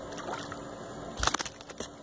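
Shallow water sloshing, with a short burst of splashing a little over a second in.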